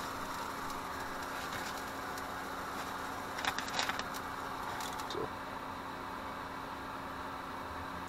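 Eggs frying in a lidded steel frying pan with a little water added, over a gas burner: a steady sizzling hiss, with a few sharper crackles about three and a half seconds in.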